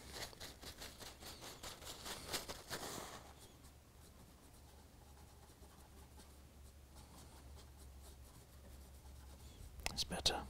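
Brisk scratchy rubbing strokes on model railway track as acrylic paint is worked off the sleepers: a quick run of strokes for about three seconds, then only faint, with a single click at the very end.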